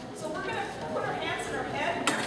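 Speech: a voice talking, words not made out.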